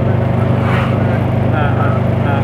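Steady low engine drone and road noise heard from inside a moving vehicle, with a brief rush of noise about two-thirds of a second in.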